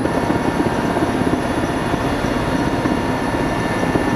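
Mi-17 helicopter heard from inside the cockpit, its twin Klimov TV3-117 turboshaft engines and main rotor running steadily on the ground: a dense, fast low flutter under a steady high turbine whine.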